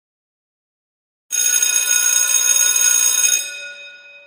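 A bell ringing loudly and steadily for about two seconds, then dying away as it rings out.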